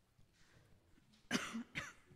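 A person coughing twice in quick succession, a little past the middle.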